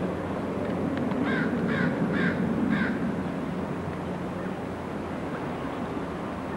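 A bird calling four times in quick succession, about two harsh calls a second, over a steady low rumble.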